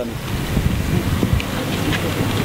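Wind rumbling on an outdoor microphone: a steady low buffeting noise.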